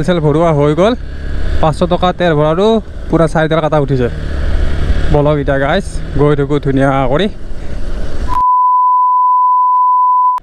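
A man talks over the low rumble of a moving motorcycle. Near the end all other sound cuts out for a single steady test-tone beep from a TV colour-bars transition, lasting about two seconds.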